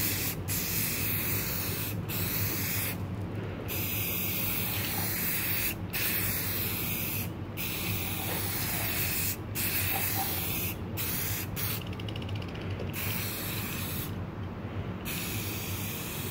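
Rust-Oleum gloss clear coat hissing from an aerosol spray can in repeated passes. The hiss cuts off briefly between passes, with longer breaks about three seconds in and near the end.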